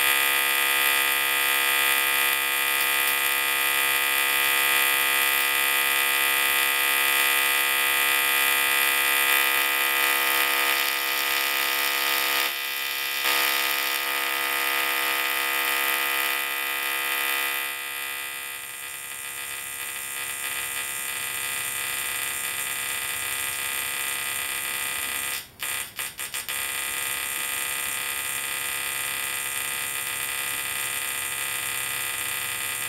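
Dual-resonant solid-state Tesla coil (DRSSTC) firing sparks into the air, a loud steady electric buzz rich in overtones. About two-thirds of the way through it drops to a quieter buzz, and near the end it breaks off several times in quick succession before carrying on.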